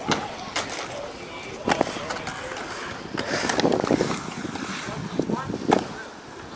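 Inline skate wheels rolling on a concrete skatepark, with several sharp knocks of the skates hitting the concrete and a louder rolling rush in the middle. Kids' voices are in the background.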